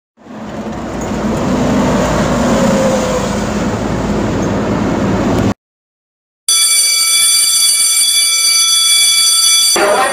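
A steady rumbling noise fades in and runs for about five and a half seconds, then stops dead. After a second of silence an electric vibrating-clapper bell rings continuously for about three seconds and cuts off sharply.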